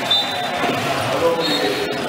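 Basketball game sound in an arena hall: a ball bouncing on the court amid voices, with a brief dropout near the end.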